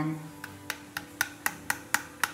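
A run of sharp, light taps, about three or four a second, of a steel spoon against a small plastic food-colouring container to knock the colouring out, over soft background music.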